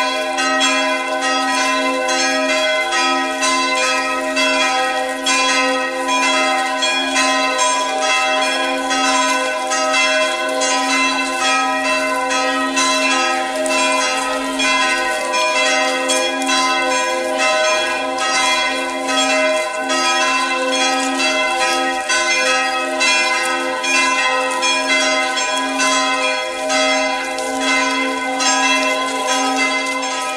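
Church bells ringing in a continuous peal: rapid, overlapping strokes with their tones ringing on steadily.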